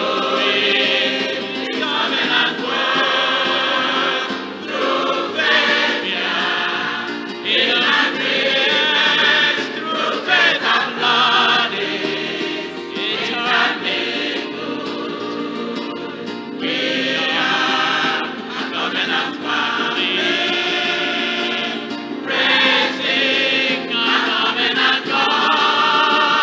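Large mixed adult choir of men and women singing a gospel song together.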